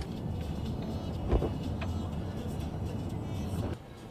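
Cabin noise of a Mercedes-Benz car driving on a forest road: a steady low rumble of tyres and engine, with a single bump about a second in. The rumble falls away shortly before the end as the car slows.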